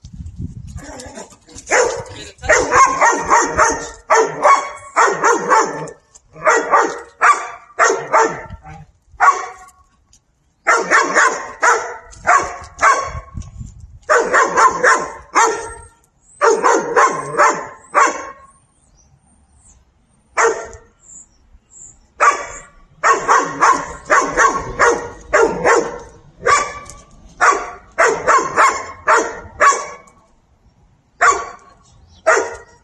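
A dog barking over and over in quick runs of loud barks, broken by short pauses and a longer lull of a few seconds after the middle.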